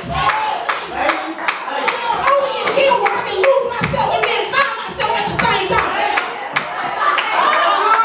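Church congregation clapping, about two to three claps a second and not in strict time, amid a mix of raised voices.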